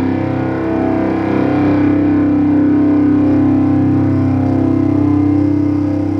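Distorted electric guitar playing through an amp, one chord struck and left to ring out, holding steady for the whole time without fading.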